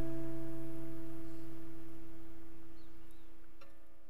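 The final strummed acoustic guitar chord rings out and slowly fades away, with a faint click near the end.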